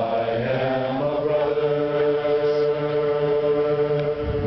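A group of men singing a hymn a cappella in harmony. They move through a chord in the first second, then hold one long chord until just before the end.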